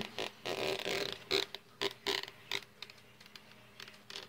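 Dry-erase marker against a whiteboard: a brief rubbing stroke about half a second in, followed by a string of short clicks and knocks that thin out toward the end.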